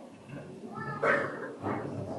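A few short vocal calls or cries rather than words, the loudest about a second in.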